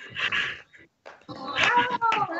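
Two women cheering with high whooping cries that bend in pitch, mixed with a few hand claps. The sound comes through a video-call connection. There is a short break a little after the start before the cheering and clapping pick up again.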